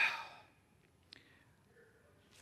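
A man's breath out into a close microphone, a short sigh that fades over about half a second, followed by a faint click about a second later.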